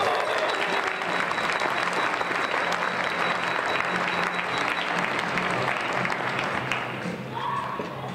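Audience applauding, thinning out near the end.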